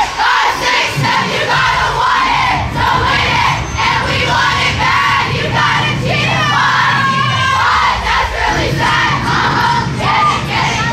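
Cheerleading squad shouting a chant together in short rhythmic phrases, with a run of high rising yells about two-thirds of the way through.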